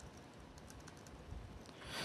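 Faint typing on an Apple laptop keyboard: a few light key clicks as shell commands are entered.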